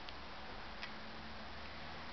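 Faint, steady background hiss with a low hum underneath, and two short, light clicks in the first second.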